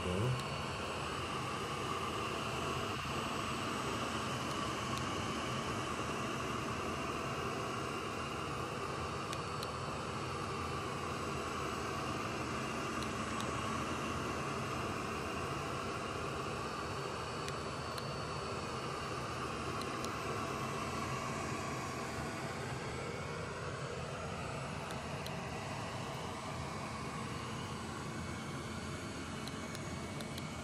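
iLife Shinebot W450 robot mop running on stone tile, a steady whir from its motors and spinning brush roller that wavers slightly in pitch as it drives.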